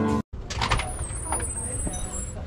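Guitar intro music cuts off, then after a brief gap a front door is pushed open, with scuffing and rustling noises and a faint high-pitched whine.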